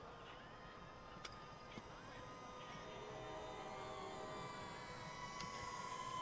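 Small DJI Neo quadcopter's propellers humming faintly at a distance, a thin steady whine that shifts a little in pitch and grows slightly louder toward the end.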